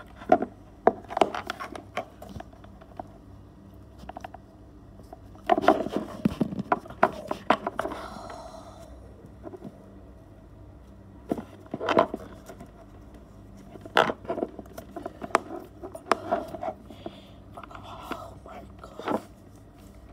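Hands handling an electric fan's power cord and wiring close to the microphone: irregular clicks and scrapes in scattered clusters.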